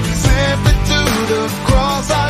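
A pop-rock worship song playing on a full band mix: drums keeping a steady beat of about two hits a second under bass and electric guitar.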